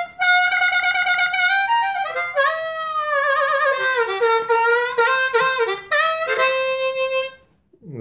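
Ten-hole diatonic harmonica in F played in a short phrase of held notes and chords, with notes bent down and back up through the middle. The playing stops shortly before the end.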